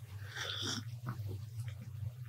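A man sipping hot tea from a small glass, one soft slurp about half a second in, over a steady low hum.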